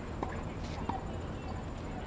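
Outdoor tennis court sound: a steady low rumble with two short sharp knocks, one about a quarter second in and one about a second in, like a tennis ball bouncing or being struck on the court.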